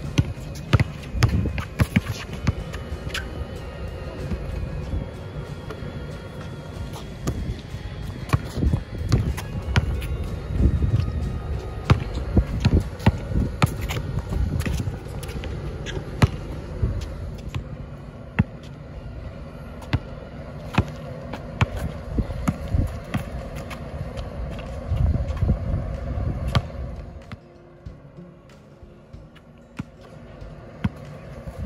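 Basketball bouncing on an asphalt court: irregular thuds from dribbling and shots, with music playing underneath. Near the end the bouncing thins out and the sound drops quieter.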